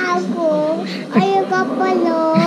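A toddler's high-pitched voice in sing-song vocalizing, several drawn-out notes that bend up and down.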